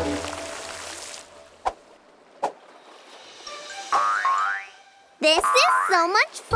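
Cartoon sound effects: background music and a hiss of water fade out in the first second, then come two short pops, a rising glide, and near the end loud wobbling boings.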